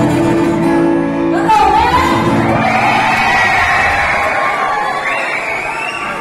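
A live band's held closing chord rings in a large hall and stops about a second and a half in. The audience then breaks into cheering, shouting and whoops.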